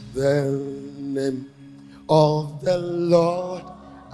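Worship singing: a voice chanting short, drawn-out phrases with wavering held notes, about four phrases, over a steady low sustained keyboard tone.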